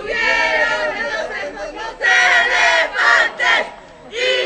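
A crowd of young people chanting and shouting together. One continuous phrase is followed by three short, loud bursts in the second half, and the voices fall away just before the end.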